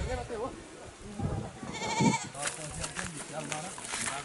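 A single short bleat about two seconds in, the loudest sound here, over the talk of several people.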